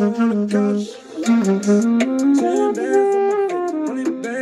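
Saxophone playing a melody of held notes over a hip-hop backing track with a steady drum beat, breaking off briefly about a second in before the notes step upward.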